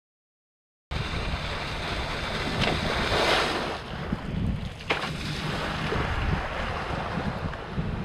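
Silence for about a second, then wind buffeting a camera microphone over choppy water, with waves and water hiss. The hiss swells a little after three seconds, and there is one sharp knock just before five seconds.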